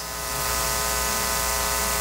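Steady electrical buzz through the public-address system, a mains-type hum with many evenly spaced overtones and a layer of hiss, the sign of an audio-visual glitch while the presentation laptop is being switched to the screen.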